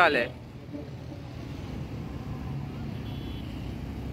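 Steady low rumble of road traffic going past, slowly growing a little louder, after the last word of speech at the very start.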